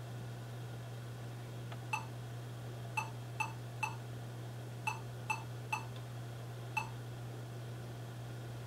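Lenovo ThinkPad T460 giving its 1-3-3-1 power-on beep code: eight short beeps, one, a pause, three, a pause, three, a pause, then one. This is the ThinkPad code that points to a memory error; the laptop fails its power-on self-test and shows nothing on the screen.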